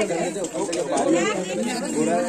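Several people talking at once: overlapping chatter of a small crowd.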